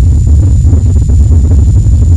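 A loud, steady low rumble with a rough, noisy texture and no clear pitch.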